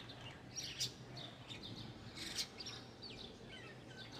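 Small birds chirping: a series of short, high chirps that slide downward in pitch, with a faint steady low hum underneath.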